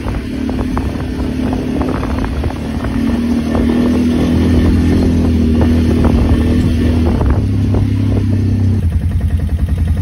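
ATV (quad bike) engine running steadily while riding, with scattered clatter on top. Near the end the steady drone gives way to an uneven pulsing engine sound at idle.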